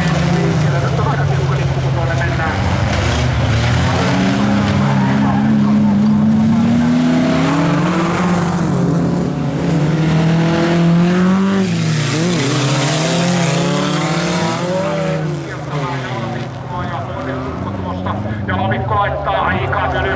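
Folk-race cars' engines revving hard as they race past, their pitch climbing and dropping over several seconds with gear changes and throttle lifts. Tyre and gravel noise comes in about two-thirds of the way through.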